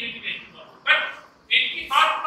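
A man's voice speaking in short, emphatic phrases, lecturing.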